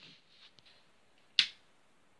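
A single sharp click of a light switch being flicked off, about a second and a half in; otherwise near quiet.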